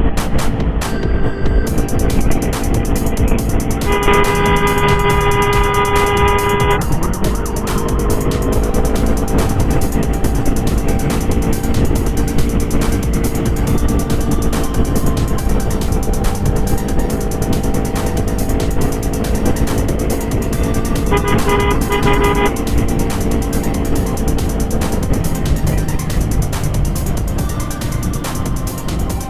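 A vehicle horn sounds about four seconds in and is held for about three seconds, then gives a shorter, stuttering burst near the end. Under it runs steady road and wind noise from a motorcycle riding through traffic.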